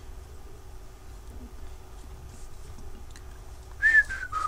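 Pilot FriXion gel pen drawing lines on sketchbook paper, faint over a low steady room hum. Right at the end a short, louder whistle-like note that falls in pitch.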